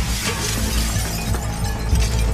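A glass windowpane being smashed, with shards breaking and clinking in many small pieces. Background music with a steady low drone plays underneath.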